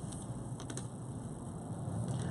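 Faint handling of thin leather cord as it is worked into a knot by hand, with a few soft ticks about half a second in, over quiet room tone.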